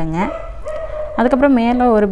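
A woman talking, with a brief steady high-pitched tone from about half a second to a second in.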